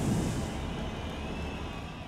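The fading tail of a logo-intro sound effect: a low rumble dying away steadily, with a faint high tone held over it.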